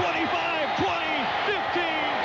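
An excited play-by-play announcer's voice over steady stadium crowd noise.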